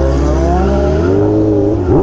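A vehicle engine accelerating: its pitch rises steadily, then levels off about a second in.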